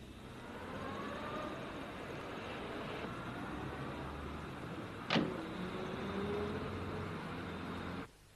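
A car engine picking up speed, its pitch rising, with a single sharp knock about five seconds in, then the engine rising in pitch again.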